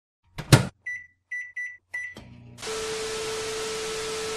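Microwave oven sound effects: a clunk, four short keypad beeps at one pitch, a click, then a steady hiss of TV static with a steady hum running under it.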